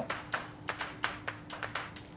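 Chef's knife finely chopping parsley on a cutting board: quick, even taps of the blade on the board, about six a second.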